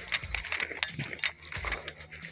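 Soft low thumps about every 0.7 s, at a walking pace, under scattered small clicks and rattles: handling noise from someone moving with gear.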